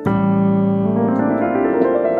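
Nord Stage digital piano: a low A bass with a minor seventh above it is struck at the start and held. About halfway through, a quick rising run of notes climbs over it.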